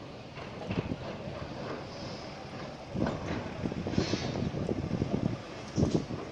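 Wind buffeting the microphone in irregular gusts, louder from about three seconds in and with a strong gust just before the end.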